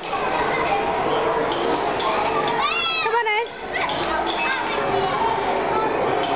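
Steady din of many children's voices at play, calling and chattering over one another. About three seconds in, one child's high, wavering cry stands out above the rest.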